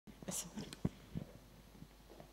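Faint whispering close to a handheld microphone, with a few short clicks and a soft knock from the microphone being handled as it is passed from one person to another.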